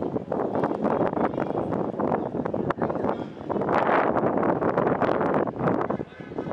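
Wind buffeting the microphone over open-air ambience, with scattered short knocks; the rush swells louder about four seconds in.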